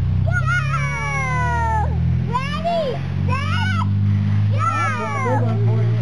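Young children squealing in high voices: one long falling squeal in the first two seconds, then a run of short squeals that rise and fall, over a steady low rumble.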